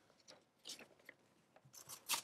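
Faint paper rustle and scrape of a dust jacket being slid off a clothbound book, mostly one brief sound a little over half a second in, with a fainter touch near the end; otherwise near silence.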